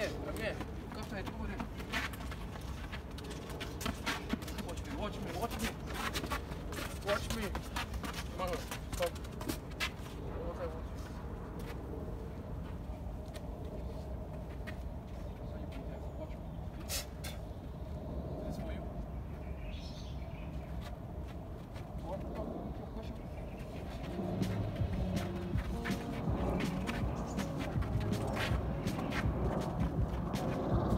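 Outdoor ambience with indistinct voices and scattered short knocks and scuffs as a football is dribbled and shielded on artificial turf. A low rumble builds and stays louder near the end.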